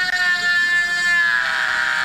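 Handheld rotary tool with a grinding bit running at high speed, grinding notches into a bearing race on a mower shaft: a steady high whine that sags slightly in pitch near the end.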